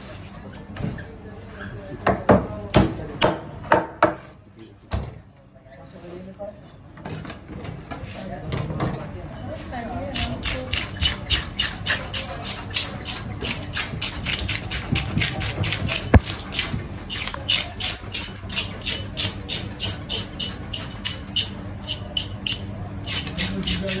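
A handheld fish scaler scraping the scales off a large fish on a plastic cutting board, in fast regular strokes of about four a second that begin about ten seconds in. Before that come a few sharp knocks.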